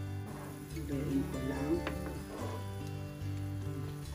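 Background music with a steady bass line of held low notes that change every second or so.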